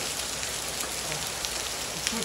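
Steady rain, with rainwater from a gutter downspout pouring into a nearly full plastic rain barrel.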